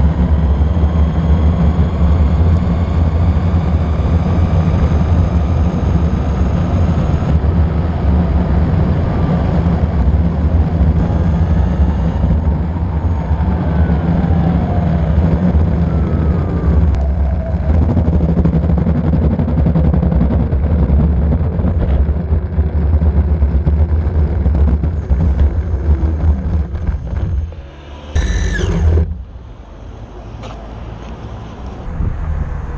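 Six-wheel DIY electric skateboard riding on asphalt: a loud, steady rumble of the wheels rolling on the road, with a faint electric motor whine that glides up and down with speed. Near the end the rumble breaks off briefly and a short falling squeal is heard.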